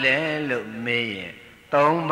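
Speech only: a Buddhist monk preaching in Burmese in a drawn-out, sing-song intoned voice.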